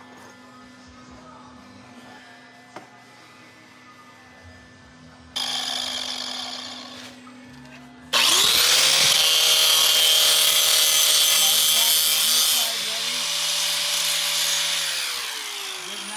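Angle grinder on steel: a short hiss about five seconds in, then the grinder spins up at about eight seconds, grinds loudly for several seconds with a steady whine, and winds down with a falling pitch near the end.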